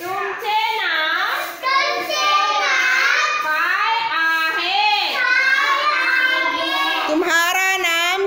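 Young children singing together, a simple tune of long held notes that rise and fall in pitch.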